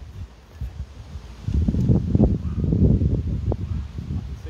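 Wind buffeting the microphone: an uneven low rumble that rises about a second and a half in and keeps gusting.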